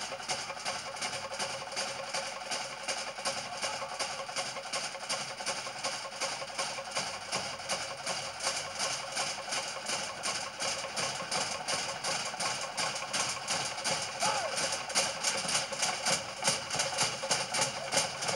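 Fast, even drumming with a hard wooden knock, the kind of log-drum beat that drives a Samoan fire knife dance. The beat grows louder in the last couple of seconds.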